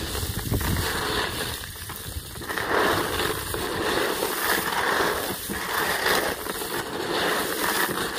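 Hands stirring a tub of small freshwater snails mixed with groundbait, the shells rattling and crackling against each other in uneven swells.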